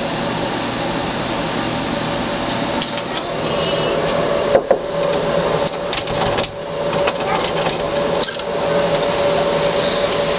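A steady motor-like whirring hum with one held tone in it, broken by a few brief dips.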